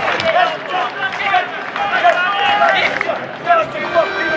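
Several men shouting and cheering over one another in celebration of a goal.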